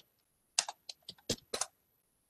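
Typing on a computer keyboard: a single click, then a quick run of about eight keystrokes lasting about a second.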